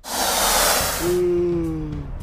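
A loud whoosh of rushing noise on a fast-motion transition, then about a second in a man's long, open-mouthed yawn, one held note sliding slightly down in pitch.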